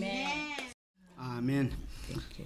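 A quiet voice with wavering, gliding pitch, cut by a brief total dropout to silence a little under a second in, then resuming briefly.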